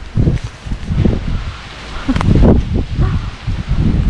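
Wind buffeting the microphone in irregular gusts, a loud low rumble with rustling over it.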